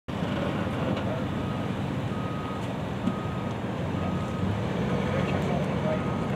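Vehicle reversing alarm beeping about once a second, a single high tone, over the low steady running of a vehicle engine.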